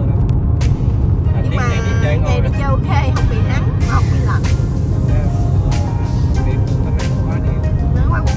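Steady low road rumble of a car driving at highway speed, heard from inside the cabin, with music and a singing voice over it for the first half.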